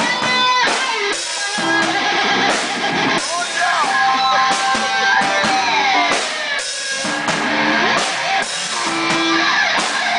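Live rock band: an electric guitar played loud over a drum kit, its notes bending and sliding up and down in pitch.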